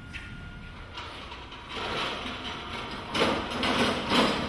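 Scraping and rattling of a studio light stand being moved and adjusted by hand, starting about two seconds in and getting louder near the end.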